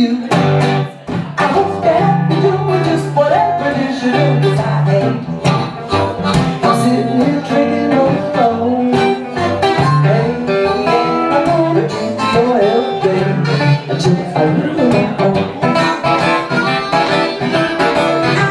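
Live blues on acoustic guitar and harmonica, played as an instrumental passage with no singing.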